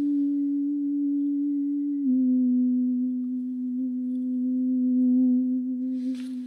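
A steady, pure sustained tone, like a sine-wave drone or singing bowl, from the story's soundscape. It drops a little in pitch about two seconds in and then holds.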